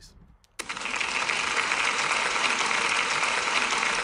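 Applause from a group clapping, starting abruptly about half a second in and carrying on steadily, then beginning to fade near the end.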